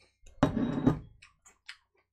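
A ceramic bowl set down on a wooden desk: one loud clunk about half a second in, followed by a few light clicks.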